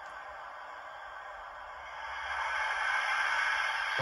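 Sound-fitted OO gauge model of the A1 steam locomotive 60163 Tornado standing still, its DCC sound decoder playing a steady steam hiss through the model's small speaker. The hiss grows louder about two seconds in.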